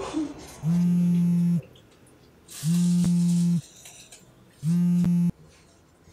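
Mobile phone vibrating with an incoming call: three steady buzzes, each about a second long and about two seconds apart. The last buzz is cut short with a click.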